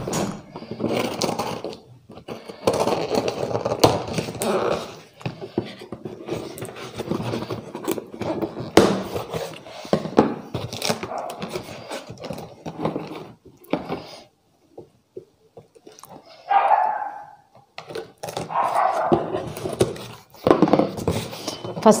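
Scissors slitting packing tape on a cardboard carton, then the box flaps being pulled open, with scraping, rustling and irregular clicks. After a short quiet spell, two brief voice-like sounds come near the end.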